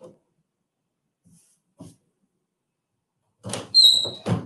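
Clamshell heat press being handled and opened: a few faint handling sounds, then near the end a run of loud clunks from the press with a short high-pitched tone among them.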